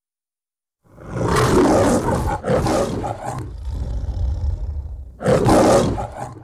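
The MGM logo lion roaring. About a second in comes a loud roar, then a shorter one and a low growling stretch, and then a second loud roar near the end.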